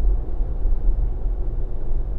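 Steady low rumble of engine and tyre noise inside a Ford Bronco's cabin, cruising at about 42 mph.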